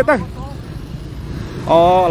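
A voice speaking at the start and again near the end, with a low steady vehicle and road-traffic rumble in the second-long gap between.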